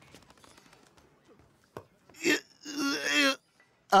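A cartoon toddler's voice grunting with effort while trying to lift a barbell: a short grunt about two seconds in, then a longer strained groan.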